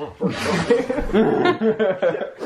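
People laughing and chuckling in short, choppy bursts.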